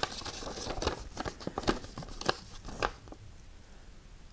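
A paper note being unfolded and handled, crinkling and rustling with small sharp crackles, going quieter about three seconds in.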